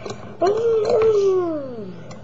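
A young boy's voice in one long, drawn-out wail that glides steadily down in pitch over its last second.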